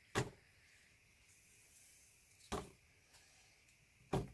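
Two short knocks about two and a half seconds apart as paint-filled plastic cups are flipped upside down and set down onto a stretched canvas.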